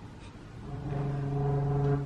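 A single low pipe-organ note sounds steadily for a little over a second, starting about two-thirds of a second in and cutting off at the end. The note is set off by one of the sensor-driven artificial organs.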